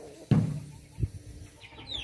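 A soft thump about a quarter second in and a sharp click at about one second, from handling, then faint short chicken calls near the end.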